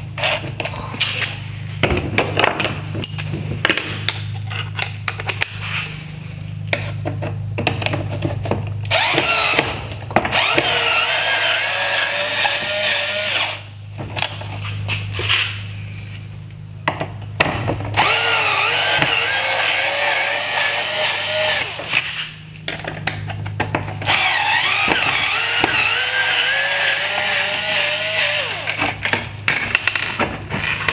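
Cordless electric screwdriver backing out T20 Torx screws from a headlight's plastic LED bar: scattered clicks of handling at first, then several runs of a few seconds each of a motor whine whose pitch wavers as the screws turn out.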